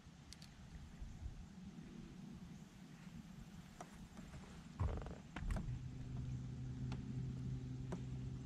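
A few faint clicks and a knock, then an electric trolling motor's steady low hum starting about five and a half seconds in.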